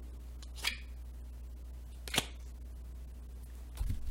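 Two short, light clicks about a second and a half apart as tarot cards are handled on a table, then a soft rustle near the end, over a steady low hum.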